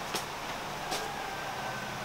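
A steady low background hum with two brief faint clicks, a bit under a second apart.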